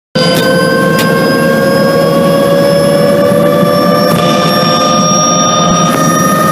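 Bell 206 JetRanger helicopter's Allison 250 turboshaft engine and rotor heard from inside the cabin: a loud, steady turbine whine over a low rotor rumble, the whine creeping slightly up in pitch.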